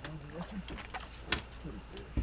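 Sharp knocks and clatter against the boat as a landing net is worked over the side to bring in a catfish, three distinct knocks, the loudest about a second and a half in, with low muttered voices between them.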